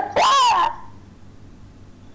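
A girl's short, high-pitched laugh, rising then falling in pitch, then quiet.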